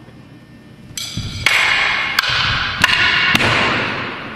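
Four sharp clacks, about half a second to a second apart, as a wooden bo staff and steel sai strike each other. They sound over a loud, echoing wash of sound in a large hall.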